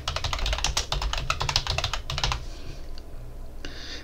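Computer keyboard typing: a quick run of keystrokes lasting a little over two seconds, then it stops.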